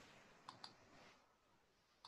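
Near silence with two faint, short clicks close together about half a second in.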